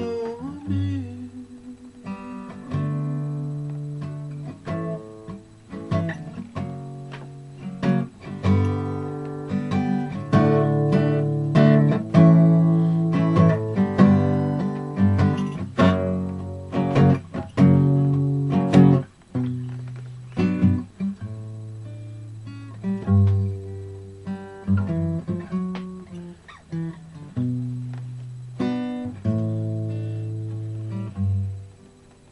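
Solo acoustic guitar playing chords that are struck and left to ring, growing louder through the middle and easing off after about nineteen seconds.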